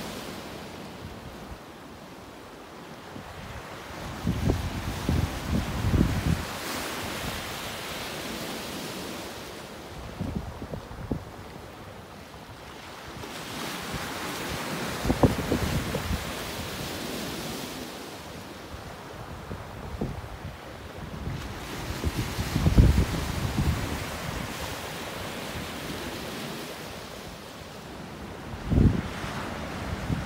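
Sea surf breaking on rocks and washing onto a cobble beach, swelling and easing with each wave. Gusts of wind buffet the microphone several times, the strongest near the end.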